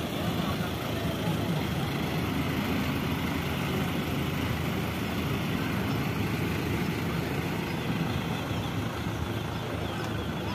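Canvas-covered army trucks running at low speed as they drive past, a steady low engine sound with traffic noise.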